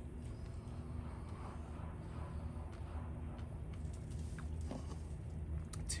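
Faint chewing of a bite of yellow dragon fruit, with a few soft mouth clicks in the second half, over a steady low background hum.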